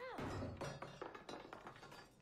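A man's short "huh", then a few irregular dull thuds over a low rumble from a TV drama's soundtrack.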